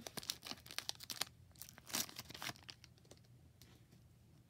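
Foil wrapper of a Pokémon trading-card booster pack being torn open by hand: a quick run of crinkly rips and crackles, loudest about two seconds in, then dying down as the pack comes open.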